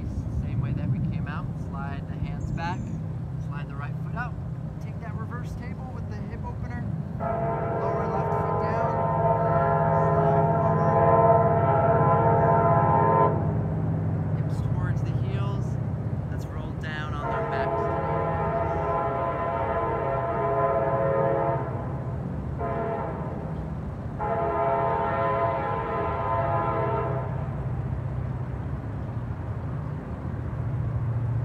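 A loud multi-note horn sounding three long blasts, the first about six seconds long, the second shorter, the third shortest, over a low steady rumble.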